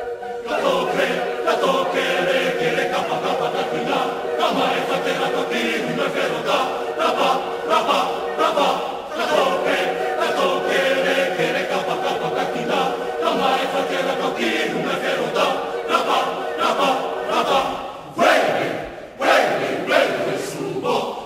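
Mixed chamber choir singing, voices moving in short rhythmic figures over a held note. Near the end the singing briefly drops away, then comes back in loudly.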